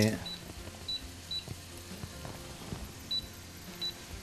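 Wooden spoon stirring diced vegetables in a stainless steel pot, with faint knocks against the pot. Five short high-pitched beeps come through it, two close together near the start and two near the end.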